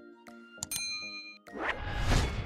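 A bright notification-bell ding sound effect, with short clicks just before it, over soft background music. About a second and a half in, a loud noisy rush with a deep rumble rises and drowns the rest.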